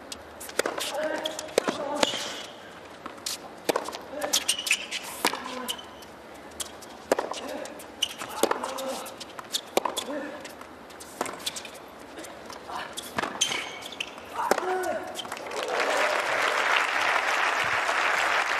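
Tennis rally on a hard court: sharp racket-on-ball strikes and ball bounces every second or so, with short grunts from the players on some shots. Near the end the crowd breaks into applause as the point is won.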